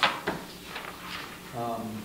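A single sharp knock right at the start, the loudest sound here, followed by low scattered handling noises and a brief spoken word from a man near the end.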